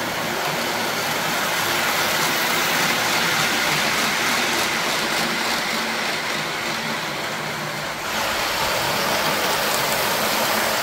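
O gauge three-rail model train running: a steady rushing rumble of wheels rolling over the track as a postwar New York Central 'Growler' locomotive pulls MTH RailKing New York Central passenger cars around the layout. The sound dips briefly near the end, then carries on.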